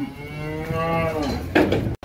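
A store bullock mooing once: one long moo that rises and then falls in pitch. A short knock follows near the end.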